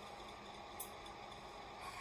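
Faint steady hiss of room noise, with one brief soft click a little under a second in.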